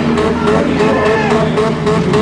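Engines of several compact demolition derby cars running and revving together on a dirt track, a steady loud mix with pitch rising and falling.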